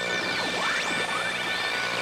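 Radio-tuning sound effect as the toy globe radio is spun between stations: whistling tones sweep up and down over a few steady tones.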